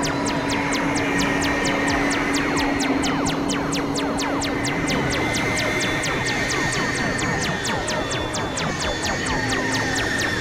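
Experimental electronic synthesizer noise music: a steady drone with a higher held tone, crossed by many falling pitch glides, over an even ticking pulse of about four clicks a second.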